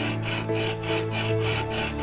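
Coconut shell being sawn open with a hand-held saw blade: quick back-and-forth rasping strokes, about four a second, over background music.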